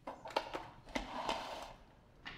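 A run of sharp clicks and knocks, then a short scraping rustle about a second in, from hands handling things on a worktop. The sounds stop shortly before the end.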